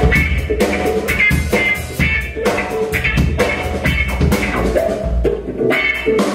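Live blues-rock trio playing an instrumental passage: electric guitar, bass guitar and drum kit with a steady beat.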